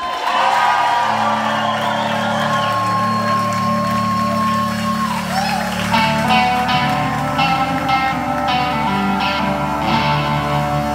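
Live rock band opening a song: electric guitars ring out held notes over a bass line, and the drums come in with a steady beat about six seconds in.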